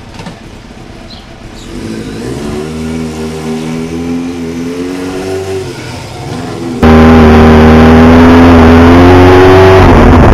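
Kawasaki Ninja motorcycle engine running through an aftermarket Norton muffler, growing louder about two seconds in and rising and falling a little in pitch with the throttle. About seven seconds in it suddenly becomes much louder and closer, heard from on the bike as it moves off.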